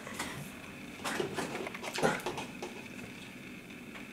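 A person gulping down a thick, icy blended drink, with a few short, faint swallowing and throat noises about one and two seconds in.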